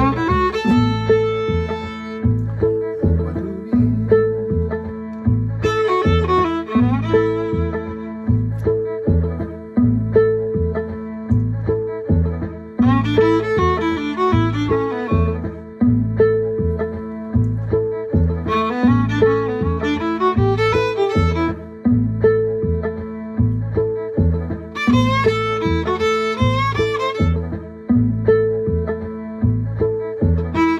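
Violin playing short blues fiddle phrases over a backing groove with a steady bass pulse. Each phrase lasts two or three seconds and is followed by a gap of a few seconds filled only by the groove, a call-and-response pattern that leaves room for the listener to play the phrase back.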